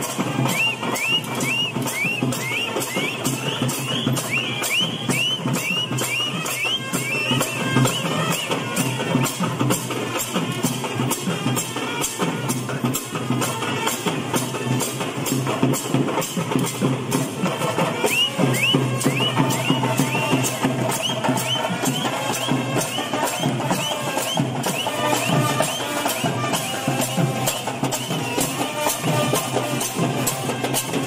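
Procession drum band playing a fast, steady rhythm on drums, with a dense run of strokes throughout. Short rising high notes repeat over the drumming in the first several seconds and again about two-thirds of the way through.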